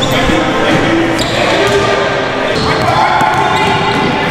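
A basketball bouncing on a hardwood gym floor during play, with players' voices over it, echoing in a large hall.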